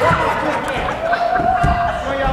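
Voices calling out across an echoing school gymnasium, with one drawn-out call about halfway through and a couple of dull thuds just after the middle.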